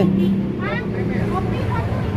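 Indistinct voices of people nearby over the low steady hum of road traffic engines.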